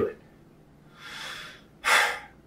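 A man breathing: a soft breath about a second in, then a short, sharp, loud breath near the end.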